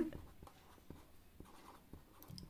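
Marker pen writing on a paper chart: a few faint short strokes.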